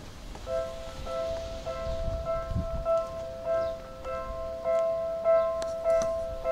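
Japanese railway level-crossing warning bell starting about half a second in: an electronic ding repeating just under twice a second. It signals that a train is approaching.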